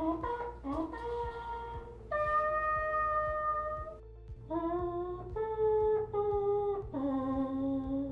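3D-printed hippo-shaped wind instrument playing a short run of held notes: a long higher note in the middle, a brief pause about four seconds in, then four lower notes, with a steady low hum underneath.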